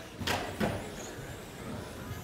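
Stock-class electric RC short-course trucks racing on an indoor carpet track, with a short sharp clatter about a third of a second in and a knock just after.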